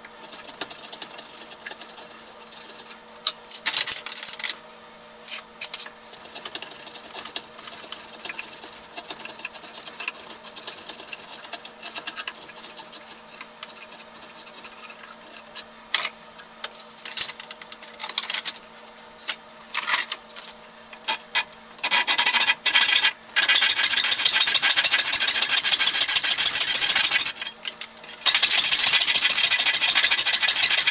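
Hand-held steel edge tools shaving and scraping a hickory sledgehammer handle. First come scattered short strokes and clicks; then, about 22 s in, a loud continuous scraping starts and breaks off briefly before resuming.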